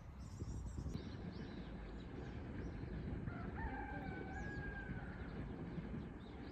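Outdoor birdsong over a steady low background rumble: small birds chirping throughout, and a little past three seconds in, one long drawn-out call lasting nearly two seconds.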